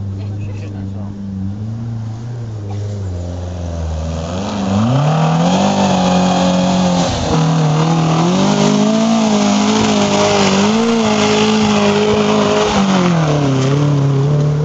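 Classic trials car engine idling low, then revving hard from about four and a half seconds in as the car climbs, the revs held high and wavering up and down, dipping briefly about seven seconds in and falling away near the end.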